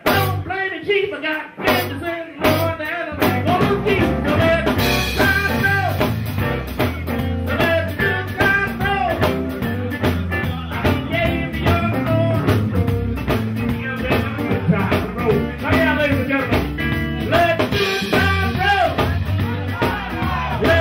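Live blues band playing: an electric guitar plays lead lines with many bent notes over bass and drums. The backing is sparse, with short breaks, for the first three seconds, then settles into a steady groove.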